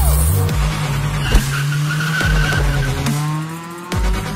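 Race car engine under electronic music, with a tyre squeal in the middle and the engine revving up, rising in pitch, over the last second.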